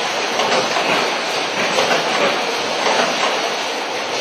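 Pasta bag bundling machine (film overwrapper) running with a steady mechanical noise.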